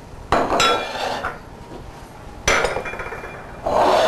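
Dishes clinking and knocking on a countertop as a glass salad bowl and a plate are handled and set down. There are three sharp clatters with a short ring: one about a third of a second in, one midway and one near the end.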